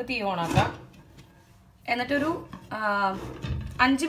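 A woman talking in short phrases, with a pause about a second in. A soft low knock comes about half a second in and another shortly before the end, as a glass lid is set onto a non-stick pan.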